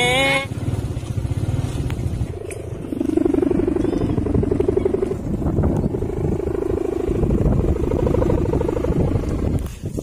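Small motorcycle engine running at low speed, a steady low rumble with a pulsing pitched drone.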